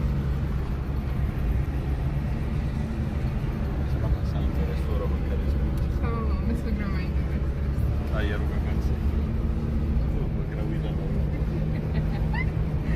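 Nissan March hatchback heard from inside the cabin while driving at a steady speed: a steady low engine and road drone, with a few short high chirps in the middle.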